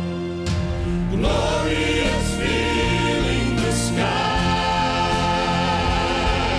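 A church praise team singing in harmony with an orchestra accompanying them. After a brief lull the accompaniment comes back in about half a second in, and the voices resume about a second in.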